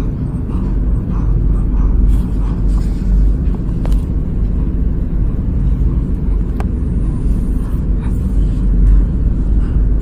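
A loud, steady low rumble, with a couple of faint clicks.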